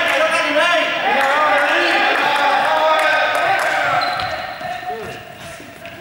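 Several young people's voices calling and shouting over one another in an echoing sports hall, with scattered thuds on the floor. The voices die down near the end.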